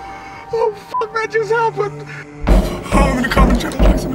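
Horror-film soundtrack: a low steady music drone under a high wavering voice, then about two and a half seconds in a loud, chaotic burst of thuds and commotion.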